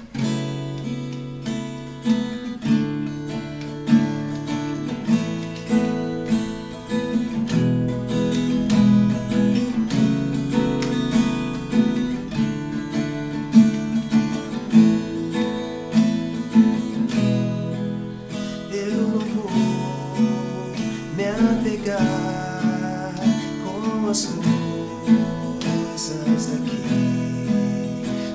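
Acoustic guitar strummed and picked in a steady rhythm, playing the instrumental introduction to a hymn before the singing comes in.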